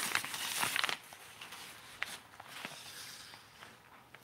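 Black cloth rod sleeve rustling and crinkling as a fishing rod is handled out of it. The rustle is loudest in the first second, then drops to quieter scattered crinkles and a few light clicks.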